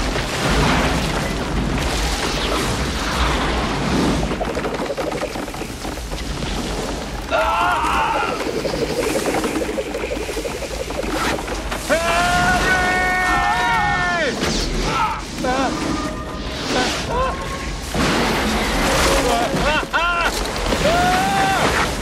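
Film action soundtrack of a gas-pocket blowout: continuous deep rumbling and booms under dramatic music, with men's shouts and cries breaking through, one cry held for about two seconds midway.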